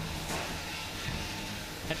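Steady whir and hiss of a 3 lb combat robot fight: spinning weapons and drive motors running, with no single clear impact.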